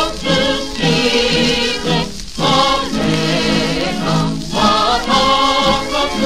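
A Japanese patriotic song in an old recording: voices sing with a chorus over a musical backing, holding long phrases with vibrato.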